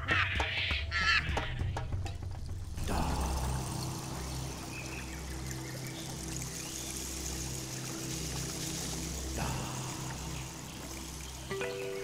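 Soft background music of sustained low notes. For the first few seconds it carries scattered small clicks and chirps; from about three seconds in a steady hiss, like running water or forest ambience, sits over it.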